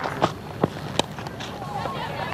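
Cricket bat striking the ball: one sharp crack about a second in, with a duller knock just before it, over steady background noise from the ground.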